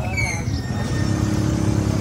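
Vehicle engine idling, its steady note firming up about a second in, with a brief high squeal just after the start.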